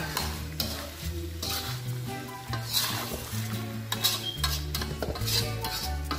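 A spatula scraping and stirring chicken in a thick coconut-milk spice paste in a metal wok, stroke after stroke, with a low sizzle of frying as the coconut milk cooks down and releases its oil.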